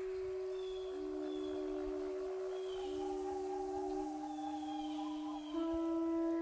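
Music from a percussion ensemble: several long, steady tones overlap, each entering at a different moment, with faint short high glides above them.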